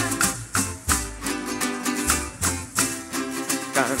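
Parang band playing an instrumental passage: strummed cuatro and other plucked strings over a low bass line, with maracas shaking out the rhythm. Singing comes back in right at the end.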